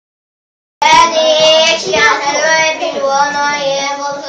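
A child's high-pitched voice in a sing-song delivery, with a few notes held, starting suddenly about a second in.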